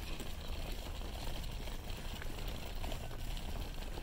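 Stroller being pushed along an asphalt path: a steady low rumble from its wheels rolling over the pavement.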